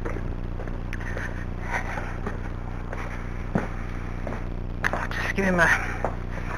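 A few footsteps under a steady low hum, with a short burst of voice near the end.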